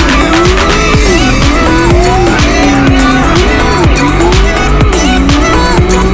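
A petrol-engined radio-control car's small engine revving up and dropping back again and again, over background music with a steady beat.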